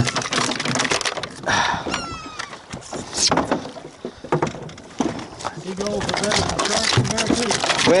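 A seagull calling in a quick run of short sliding notes about two seconds in, over scattered knocks and handling sounds as a red snapper is swung aboard a fiberglass boat deck.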